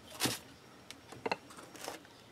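Plastic cane storage boxes being handled and shifted on a desk: a short scrape, then a few light plastic clicks and knocks.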